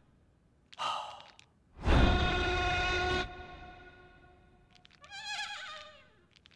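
Cartoon sound effects and a character vocalisation: a short effect about a second in, then a loud held chord-like tone lasting just over a second, and near the end a wavering, bleat-like voice sound.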